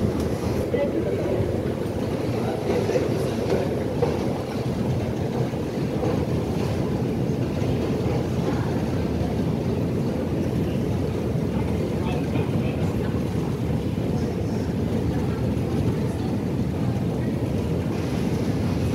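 Steady low rumble of a long Underground station escalator running, with indistinct voices of passengers around it, the sound held steady and unbroken.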